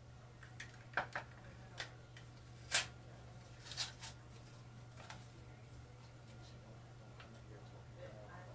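Scattered clicks and taps of small seasoning shaker jars being opened and handled, about six in the first half, the sharpest nearly three seconds in, over a steady low hum.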